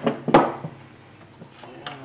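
A few sharp knocks and clatter as a metal-framed foot pump is handled and shifted on a plywood workbench, the loudest about a third of a second in. A light click follows near the end.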